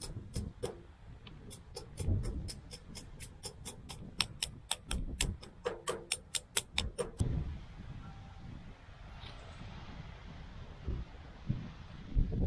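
Small hammer tapping on an old seal to drive a new V-seal into a hydraulic cylinder gland: quick light taps, several a second, that stop about seven seconds in.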